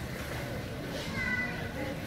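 Steady outdoor background noise with one short, high-pitched, slightly falling cry about a second in.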